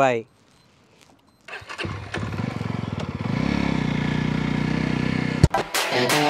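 Yezdi Roadster's 334 cc liquid-cooled single-cylinder engine starting about one and a half seconds in and settling into a steady idle, with a brief throttle blip that rises and falls in the middle. It cuts off abruptly near the end.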